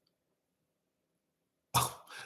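Near silence, then one short cough from a person close to the microphone near the end.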